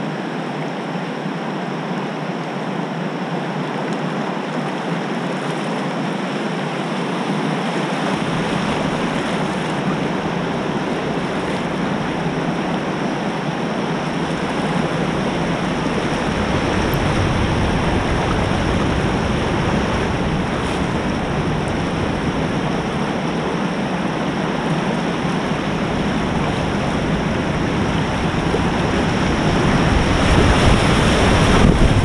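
River rapids rushing over rocks in a steady roar of white water, growing steadily louder as the kayak closes on the drop of a waterfall.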